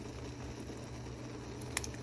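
Pot of water at a rolling boil, a steady bubbling hiss, with one short click near the end.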